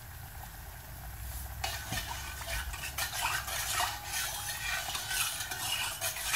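Stirring salt into a metal pot of warm water, yeast and oil, with irregular scraping and light clinks against the pot that start about one and a half seconds in.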